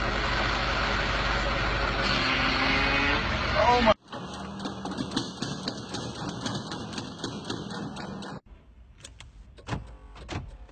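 A car engine running in an open engine bay with a loud, harsh, steady noise over a low hum, cut off suddenly about four seconds in. A quieter running engine follows, then a few sharp clicks near the end.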